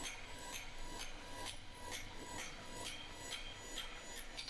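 Light, quick hammer taps on a glowing steel bar on the anvil, faint and even at about four a second, as the bar is dressed to its final dimensions.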